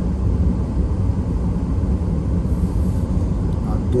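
Steady low rumble of a car being driven, heard inside the cabin: tyre and engine noise on a mountain road.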